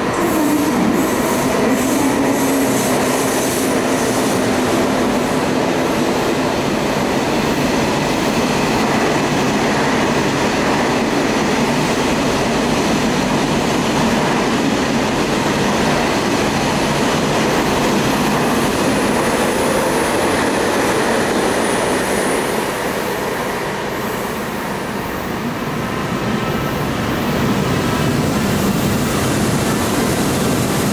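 KTX-I high-speed trainset passing through the station at low speed: a steady, loud noise of wheels running on the rails, with a low hum in the first few seconds. A thin, high squeal comes in for a few seconds about two-thirds of the way through.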